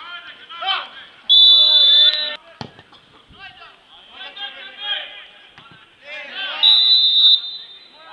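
Two loud, high, steady whistle blasts, each under a second long, the second about five seconds after the first, over shouting voices from players and spectators at a football match. A single sharp thud comes about two and a half seconds in.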